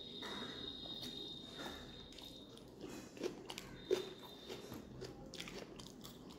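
Close-miked chewing and wet mouth sounds of a person eating rice and fish curry by hand, with the soft squish of fingers mixing rice in the curry and a string of small clicks and smacks, the sharpest about three and four seconds in.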